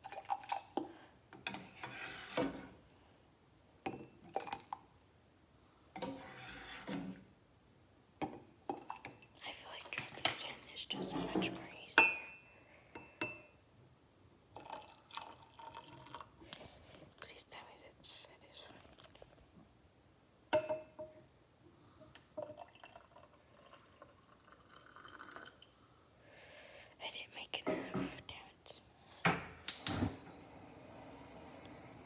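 Intermittent kitchen clatter: knocks and clinks of pots, dishes and utensils being handled, with one sharp knock about twelve seconds in.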